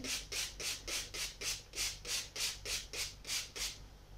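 Small finger-pump spray bottle misting water over soil, pumped rapidly in a steady rhythm of about three to four short hissing spritzes a second, stopping shortly before the end.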